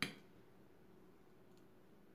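A metal fork clinks once, sharply, against a ceramic plate while picking up banana slices, with a brief ring.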